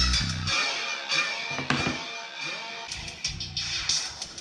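Bass-heavy music played through a bare 3-inch woofer driver. The deep bass cuts out about half a second in, leaving thinner music, and some low notes come back near the end.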